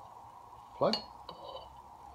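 A light metallic clink about a second in, ringing briefly, as a stainless steel blank end plug removal tool's keyway is set onto the metal end plug.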